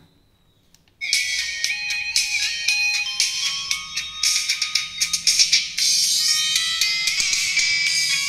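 Music played through a WT A500 titanium horn tweeter driven through a single capacitor and no crossover, so mostly the treble comes through: a bright sound with little bass underneath. It starts about a second in.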